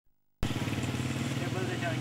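A steady, low engine drone starts abruptly just under half a second in and runs on at an even level, with a man's voice starting to call out in the second half.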